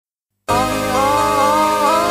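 Electronic remix music starting abruptly about half a second in, a gliding melody line over a steady bass.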